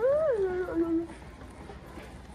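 One drawn-out, high-pitched vocal sound that rises in pitch, falls and levels off, lasting about a second; then only store background.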